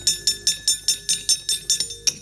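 Wayang kulit kepyak, the metal plates hung on the puppet box, struck in a fast steady rhythm of about five clanks a second, each ringing briefly, accompanying the movement of the puppets.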